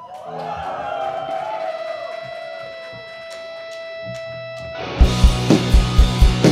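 Electric guitar holding one long sustained note that wavers at first and then steadies, over a few soft low notes and sharp clicks, as a live rock song begins. About five seconds in, the full band comes in loudly with drums keeping a steady beat.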